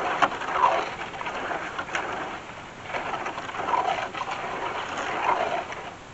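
Hand digging in a post hole: a long-handled tool scraping and striking the soil in irregular strokes.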